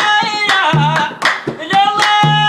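Mauritanian madh praise song: a man's voice singing long held notes that waver in the middle, over regular hand clapping and deep thuds from a large hand-played wooden drum.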